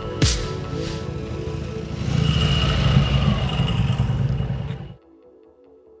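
Arch KRGT-1 motorcycles with big S&S V-twin engines running as they pull away, getting louder about two seconds in, with a knock near the start. The engine sound cuts off suddenly about five seconds in, leaving faint background music.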